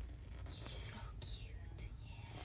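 Soft whispering to a cat: a few short, hissy, breathy syllables over a low steady hum.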